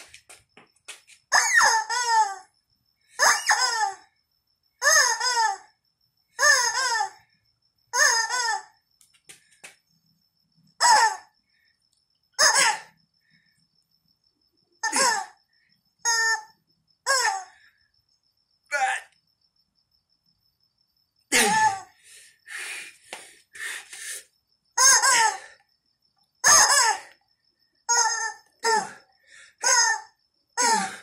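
Screaming yellow rubber chickens squeezed over and over in a workout set, each squeeze giving a wavering squawk of up to about a second. About twenty squawks come in runs with short pauses between them.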